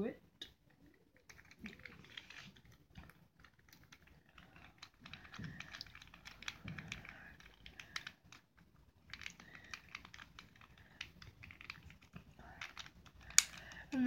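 Small screwdriver turning a screw into a plastic Skewb puzzle piece, with quiet, irregular clicks and scrapes of metal and plastic being handled. A sharper click comes near the end.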